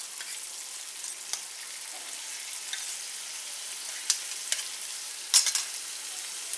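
Roasted moong dal sizzling in hot spiced oil in a kadai as it is stirred with a spatula, a steady hiss broken by a few sharp clicks of the spatula against the pan, the loudest about five seconds in.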